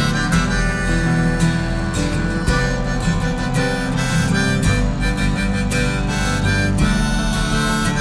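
Instrumental break of a slow acoustic country song: a harmonica playing held melody notes over steadily strummed acoustic guitar.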